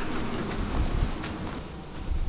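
Rough rumbling handling noise with scattered knocks and rustles, as from a camera being carried and swung around.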